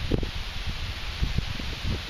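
Wind rumbling on the microphone with rustling, and irregular low knocks as a channel catfish is lifted from the water in a landing net.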